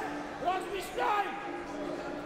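Indistinct voices in a large hall: two short rising shouts, about half a second and a second in, over a steady background tone.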